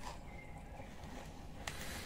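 Faint, steady sound of water boiling in the background, with a small click near the end.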